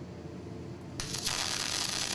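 MIG welding arc striking about a second in and burning with a steady hiss, over a faint low hum.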